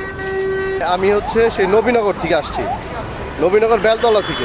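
A road vehicle's horn gives one steady blast that cuts off just under a second in.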